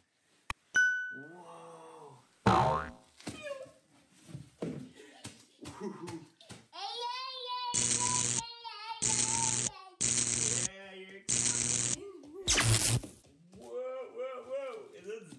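Edited cartoon-style sound effects: a short ping about a second in, a sharp swoosh at about two and a half seconds, then four evenly spaced loud bursts and a fifth near the end. A small child vocalises between them.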